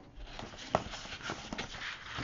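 Quiet rustling and sliding of cardstock on a tabletop as hands move the paper pieces, with a few soft clicks of card against card.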